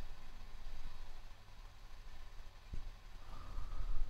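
A pause with only quiet room tone: a steady low hum and faint hiss, with one soft click a little past the middle.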